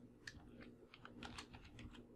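Computer keyboard typing: a quick, irregular run of faint keystrokes.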